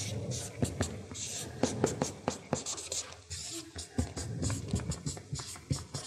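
Felt-tip marker writing on a paper flip chart: an uneven run of short, quick scratching strokes and sharp taps as letters are written.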